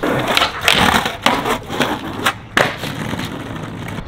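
Skateboard wheels rolling on concrete, with a scraping slide along a ledge and several sharp clacks of the board popping and landing.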